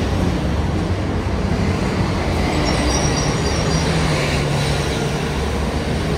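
City buses and heavy avenue traffic running at a bus platform: a loud, steady low rumble with a brief high-pitched squeal about three seconds in.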